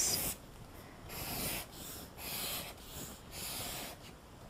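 Felt-tip marker drawing straight lines on paper: three quick rubbing strokes, each about half a second long and roughly a second apart, as grid lines are ruled.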